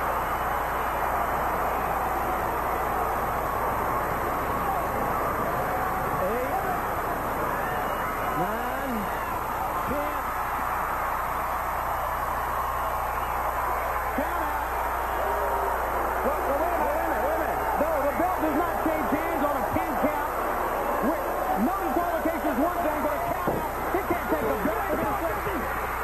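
Large arena crowd shouting and yelling, many voices at once, growing louder and more agitated about two-thirds of the way through. A steady low hum runs underneath.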